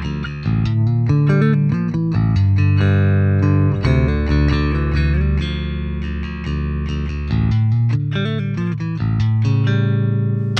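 Bass guitar riff of low sustained notes played back through the Gallien-Krueger 800RB bass amp plugin, heard while its bi-amp and full crossover modes are compared.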